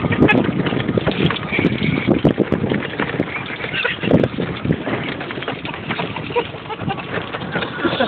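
Golf cart driving over a rough dirt track, bumping and rattling with many short knocks, with wind on the microphone.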